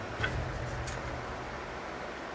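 Quiet room tone: an even hiss under a faint low hum that fades about a second in, with a couple of soft small clicks from hands at work on the craft piece early on.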